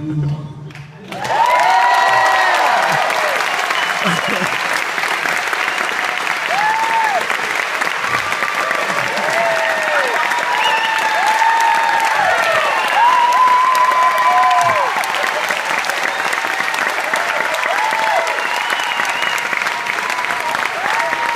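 Audience applause that breaks out about a second in and stays loud and steady, full of rising-and-falling whoops and cheers from the crowd.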